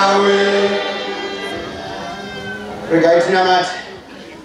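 A man's voice chanting through a microphone: a held note that fades away over about two seconds, then a short wavering sung phrase about three seconds in.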